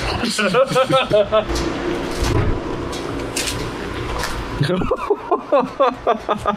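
A man's voice speaking, with about three seconds of steady outdoor background noise in the middle.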